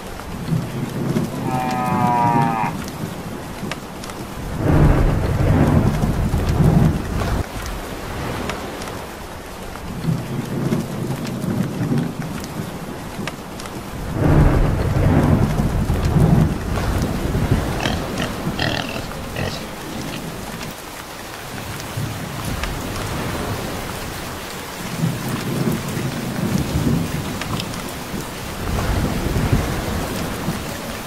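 Steady heavy rain with rolls of thunder that swell and fade every few seconds, about six times.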